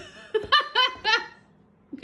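Young child laughing: a quick run of short, high-pitched giggles lasting about a second.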